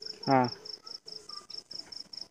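High-pitched insect chirping, a quick even pulse repeating about six times a second, steady in the background of a phone-call recording.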